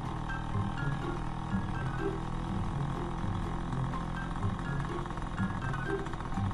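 A small motorcycle engine running steadily, mixed under light background music.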